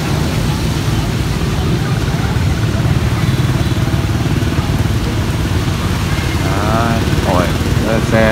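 A motor vehicle engine idling, a steady low rumble. A voice speaks briefly near the end.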